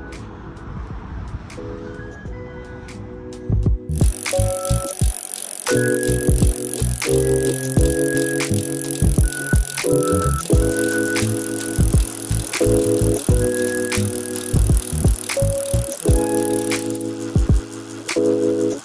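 Background music: soft chords for about the first four seconds, then a louder section with a steady beat and bass comes in and carries on.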